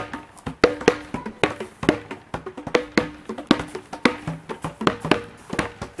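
Outdoor playground percussion instruments struck in a simple tune: a string of sharp, pitched knocks at about three a second, each with a brief ring.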